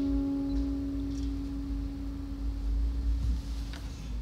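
The last acoustic guitar chord ringing out and slowly fading away over a low hum, with a couple of faint knocks near the end.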